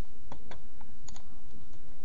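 A few sharp computer mouse-button clicks, including a quick pair about a second in, as files are Ctrl-clicked to add them to a selection. The clicks sit over a steady low hum.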